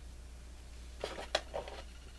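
Small handling sounds of jewelry pliers working wire, with one sharp metal click about a second and a third in, as a wire loop is closed onto an earring. A low steady hum runs underneath.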